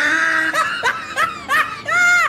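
A person laughing: a run of short laughs, about three a second, each rising and falling in pitch, with a longer one near the end.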